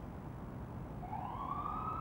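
Low city background hum, with a siren starting about halfway through: its wail glides upward and then holds a high note.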